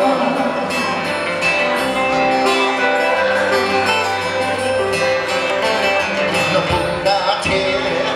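Live Hawaiian music: acoustic slack-key guitars with a lap steel guitar playing sustained, sliding melody lines, amplified through stage speakers.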